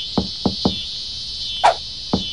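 Three quick hollow knocks on a watermelon, then a sharper, higher knock about a second later, over a steady high-pitched insect drone.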